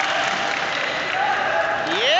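Spectators clapping in a large hall, mixed with scattered voices, and a man's call rising in pitch right at the end.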